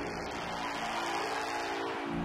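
Electronic logo-sting sound design: a held synthesized drone with a noisy wash over it, its bass cutting out briefly just before the end.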